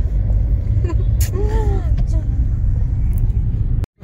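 Steady low road rumble of a moving car heard from inside the cabin, with a short voice sound about a second and a half in. The sound cuts off suddenly just before the end.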